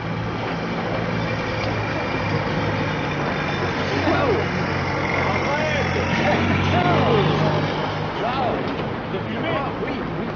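A steady low motor hum under a noisy background, with voices heard from about four seconds in.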